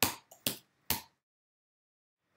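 Computer keyboard keystrokes: four short sharp clicks within about a second as a line of code is entered and run.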